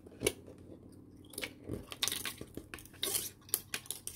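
Fine weaving wire being wound by hand around a thicker wire frame: scattered small clicks and scratchy rustles of the wire, with more of them close together in the second half.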